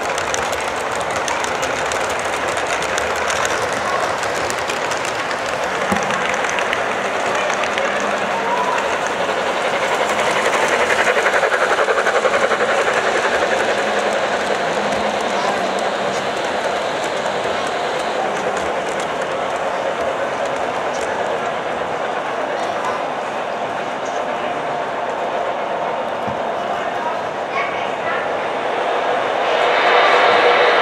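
O-scale model passenger train running past on the layout track: a steady rolling rumble of metal wheels on rail, with background voices of people in the room.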